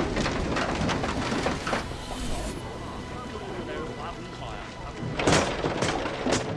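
Voices talking from the film's own soundtrack over a steady hiss of background noise, with a louder stretch of voices near the end.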